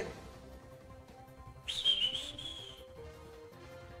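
A single high whistle, about a second long, starting sharply near the middle and dipping slightly in pitch, over faint background music.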